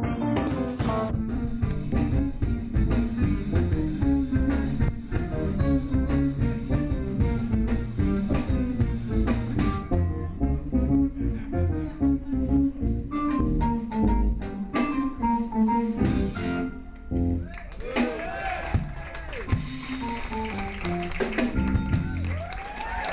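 Live jazz band playing a busy passage: electric bass line, electric guitar, keyboard, drums and trumpet. The playing thins out and winds down in the last few seconds, while voices whoop and cheer over it.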